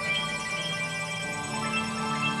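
Ambient new-age synthesizer music: sustained, overlapping chords with high held tones, the chord changing about one and a half seconds in.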